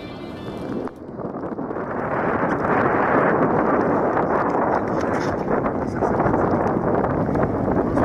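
Acoustic guitar music that stops about a second in, then a steady rushing noise of wind on the microphone and surf on a rocky shore, building up over the next second or two.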